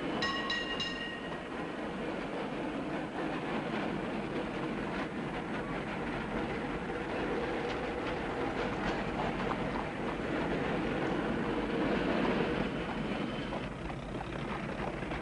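Train running along the rails: a steady rumble with the clatter of wheels, and a brief ringing tone in the first second.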